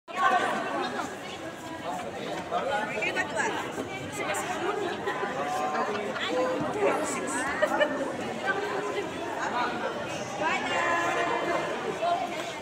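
Several people talking at once: overlapping conversational chatter in a large room.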